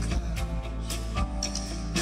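Live rock band playing an instrumental stretch with no singing: electric guitar over held bass notes, with drum-kit hits a few times through.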